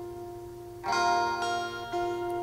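Acoustic guitar backing track playing between sung lines: a held note rings and fades, then a new chord is plucked about a second in and another just before the end, each ringing on with a bell-like tone.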